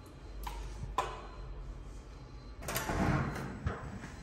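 An apartment-building elevator being used: two short clicks in the first second, from the call button and door, then about a second of noise near the end as the elevator door opens and someone steps into the cab.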